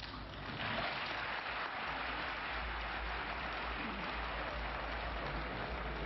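Audience applauding: dense, even clapping that swells within the first second and then holds steady.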